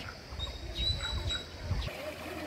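Birds chirping in short calls, with a thin, high steady note held for about a second, over an irregular low rumble.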